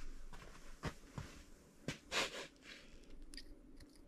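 Faint handling sounds of gloved hands with a small metal engine part: a few light clicks and taps, and a short rush of noise about two seconds in.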